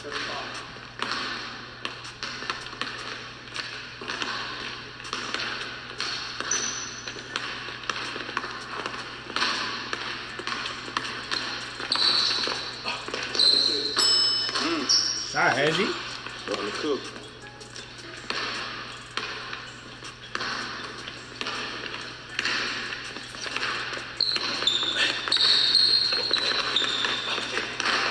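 Basketball dribbled and bounced on a hardwood gym floor with sneakers squeaking, under background music and occasional voices. Squeaks cluster about halfway through and again near the end.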